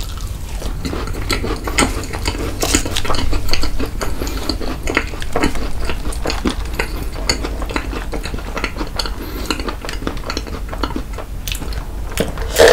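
Close-miked chewing of a macaron, full of many quick wet mouth clicks and smacks.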